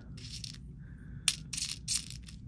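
Small cube beads clicking against one another and a plastic bead tray as fingers stir through them: a faint rustle, one sharp click about a second in, then a quick run of small clicks near the end.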